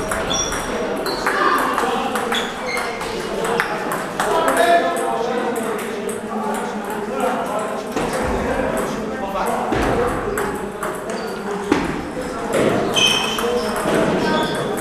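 Table tennis balls clicking off paddles and the table in quick rallies, with sharp ball strikes from the near table and from other tables in the hall.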